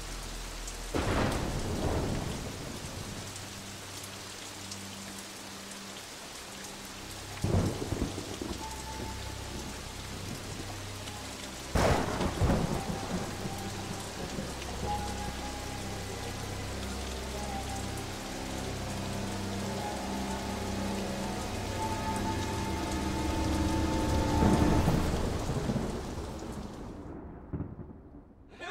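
Steady heavy rain with thunder: three sharp claps in the first half, then a longer rolling rumble that builds near the end.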